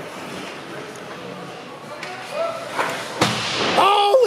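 A single sharp crack of a hockey stick striking the puck on a shootout shot, about three seconds in, heard over the echoing hubbub of an ice rink. Voices call out just before the crack and again near the end.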